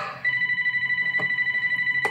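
Phone ringing with a steady electronic trilling tone that warbles rapidly, starting about a quarter second in.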